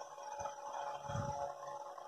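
Faint rustling and handling of a cotton bed sheet being folded by hand, with a few soft low knocks.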